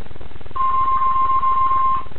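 A steady electronic beep, one long even tone starting about half a second in and lasting about a second and a half, over a constant low background hum.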